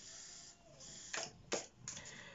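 A small deck of oracle cards shuffled by hand: a soft steady rustle, with three sharp card snaps in the second half.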